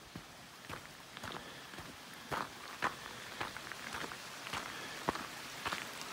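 Footsteps of a hiker walking on a frozen, frost-covered dirt trail: a string of irregular short steps over a faint steady hiss.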